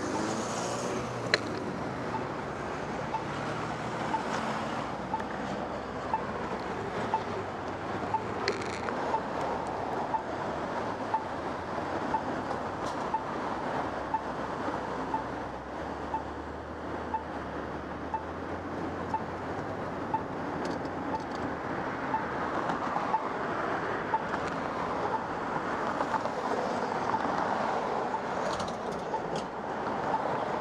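Street traffic: cars driving past over a steady city hum, with a short high beep repeating about once a second, the locator tone of a crosswalk pedestrian signal. A deeper vehicle rumble passes about halfway through.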